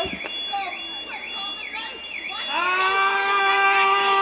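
A warbling siren tone dipping in pitch about twice a second, with scattered voices. Past halfway a loud, long shout held at one steady pitch starts and carries on.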